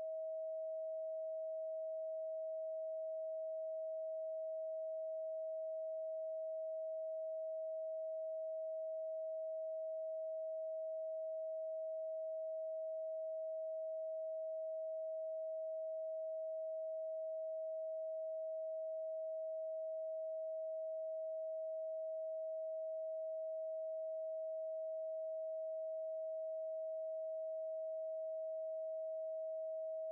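A 639 Hz pure sine tone held steady and unbroken at one pitch and level.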